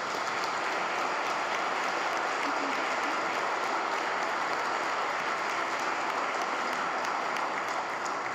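Audience applauding steadily: dense clapping from a large crowd.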